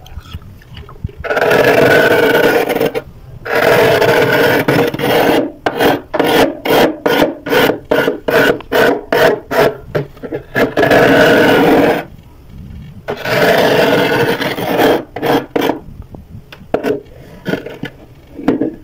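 Big metal spoon scraping thick frost off the inside wall of a freezer: long drawn-out scrapes, then a run of quick short strokes, two or three a second, then more long scrapes.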